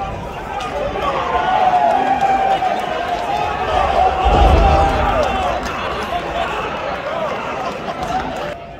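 Arena crowd shouting and cheering during a wrestling match, with one heavy low thud of a body landing on the ring mat about four seconds in.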